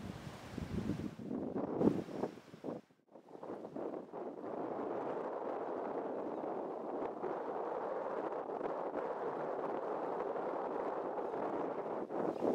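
Wind on the microphone, gusty and buffeting at first, then a steady rush after a brief dropout about three seconds in.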